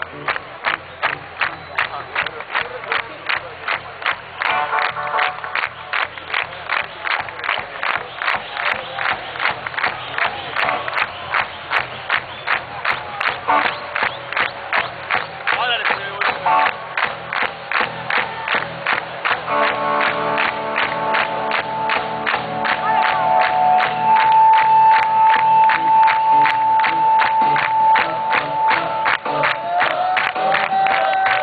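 Live rock band, with electric guitar and drums, playing at full volume. A fast, steady drum beat runs throughout. About two-thirds of the way in, a long held high note comes in over it. It is heard through a low-quality recording from within the audience.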